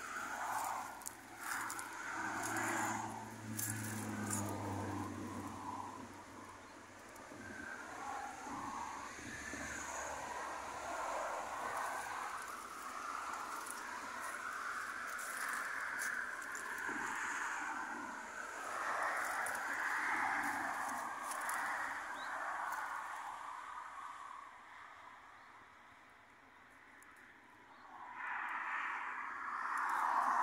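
Highway traffic passing close by, a noisy hum that swells and fades as vehicles go by, dipping briefly near the end before rising again.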